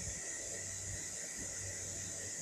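Steady, even background hiss, with no distinct events.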